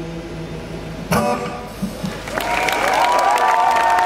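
An acoustic guitar's held closing chord fades, then a final strummed chord is struck about a second in. From about halfway through, the audience cheers and whistles, growing louder.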